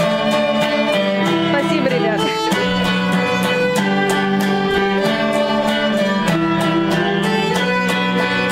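A violin playing a sustained melody over a steadily strummed electric guitar. About two seconds in, the notes slide downward before the tune picks up again.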